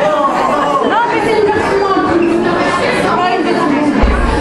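Many people chatting at once in a large hall, a steady babble of overlapping voices with no music playing.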